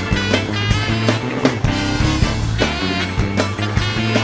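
Live soul-funk band playing an instrumental passage, with a steady beat of regular hits over held bass notes and pitched instruments.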